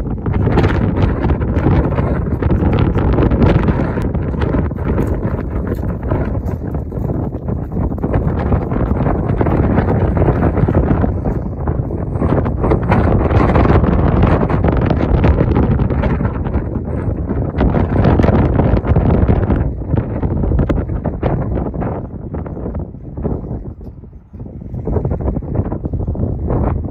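Wind buffeting the microphone: a loud, gusting noise that eases briefly near the end.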